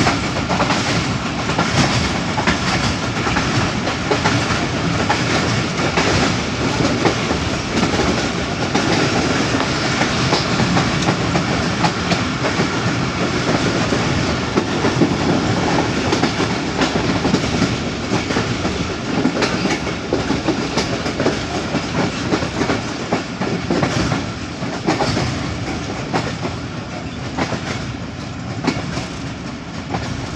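A moving passenger train heard from inside a carriage: the steady rumble of its wheels on the track, with repeated clicks as they cross rail joints. The running noise eases a little near the end.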